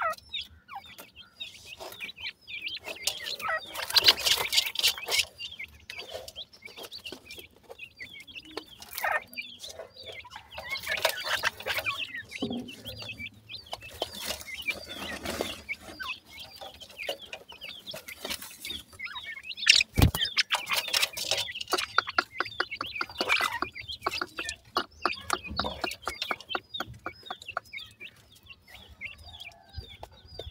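A flock of young grey francolin (teetar partridge) chicks chirping and peeping nonstop in high, short calls, with bursts of rustling and scratching as they forage in dry soil. A single sharp knock about twenty seconds in is the loudest sound.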